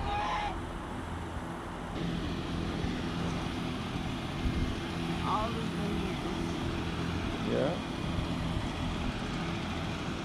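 Domestic geese honking once at the very start, then a steady low outdoor rumble with a few faint, brief higher sounds.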